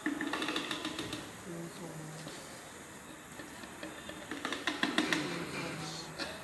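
Powder jar filling machine running in two short bursts of rapid mechanical clicking, about a second each: one near the start and one about four and a half seconds in.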